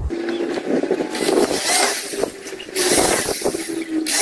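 Corded electric drill running and boring a pilot hole into a wooden plank, its motor holding a steady whine with two long, louder spells as the bit cuts into the wood.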